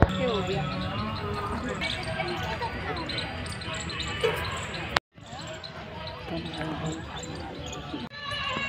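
Indistinct chatter of many visitors, several voices talking at once, over a steady low rumble. The sound drops out abruptly for a split second about five seconds in, at an edit cut.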